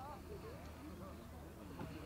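Faint, indistinct voices of people talking in the background, over a low steady hum.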